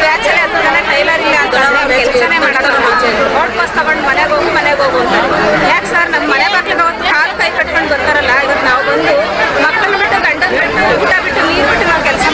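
Several people talking loudly at once, their voices overlapping in a continuous jumble.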